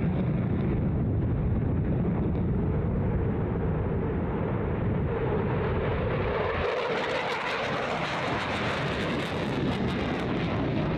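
Jet noise from a twin-engine F-15 Eagle fighter climbing out after takeoff, a steady loud rush. About two-thirds through, the deep rumble suddenly drops away and a harsher, hissier roar takes over.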